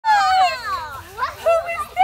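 Excited, high-pitched wordless squealing and shouting by a child and an adult at play: one long squeal at the start that slides down in pitch, then shorter high cries.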